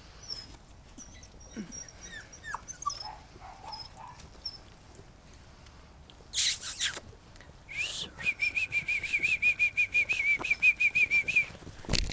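Puppies on grass, with a brief rustling burst about six seconds in, then a fast run of high-pitched puppy yips, about six a second, for the last few seconds; faint chirps earlier.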